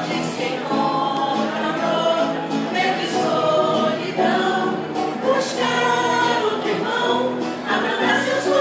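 A vocal group singing together in chorus, several voices holding and changing notes in harmony.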